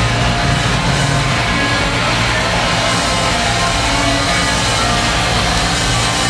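Death metal band playing live at full volume: heavily distorted electric guitars through Marshall amplifiers with bass and drums, a dense, continuous wall of sound recorded from within the audience.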